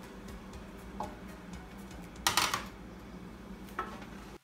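Wooden spoon knocking and scraping against a plate and the rim of an aluminium stockpot as the last of the salt is tipped into the soup, with one sharper clatter a little over two seconds in. A steady low hum runs underneath.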